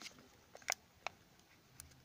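Four brief, faint clicks from fingers handling a foil-wrapped Kinder Surprise egg and its plastic toy capsule, the loudest near the middle.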